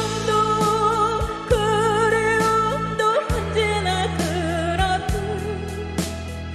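A woman singing a Korean popular song over a backing track with bass and drums, holding long notes with a wide vibrato.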